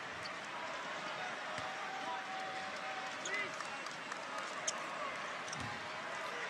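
Faint steady background hiss with faint, indistinct voices in the distance.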